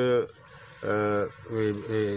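Crickets chirring in a steady high-pitched band, with a man's voice speaking a few short phrases over them.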